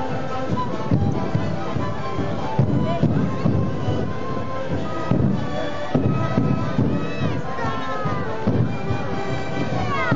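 A sikuri ensemble playing: many siku panpipes sounding held notes together at several pitches, over repeated low drum beats.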